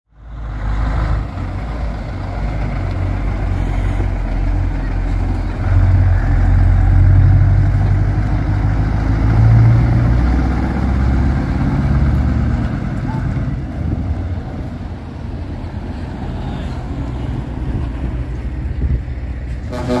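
Heavy trucks' diesel engines running as they drive slowly past, a deep steady rumble that swells loudest in the middle.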